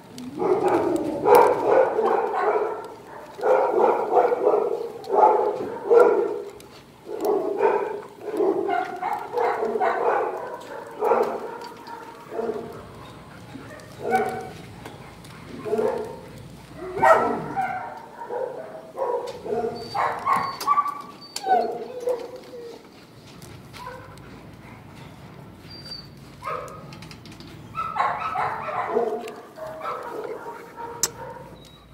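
Dogs barking in a shelter kennel in irregular runs of short barks, with brief lulls about halfway through and again in the last third.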